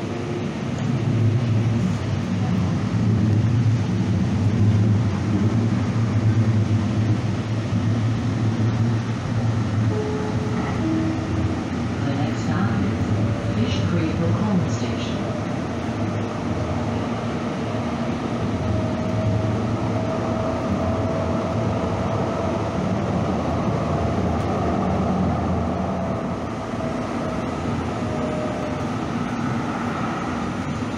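Electric light rail train running from the front cab, with a steady low motor hum that comes up about a second in as it pulls away. There is a brief two-note tone about ten seconds in, a few clicks, and a long faint whine in the second half.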